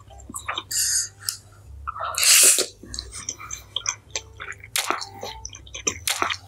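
Close-miked wet eating sounds: spicy instant noodles being slurped and chewed. There is a short slurp about a second in and a long, loud slurp a little after two seconds, among many small wet clicks of chewing.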